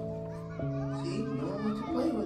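Soft background music of sustained chords that change every half second or so, over a faint bed of children's voices at play.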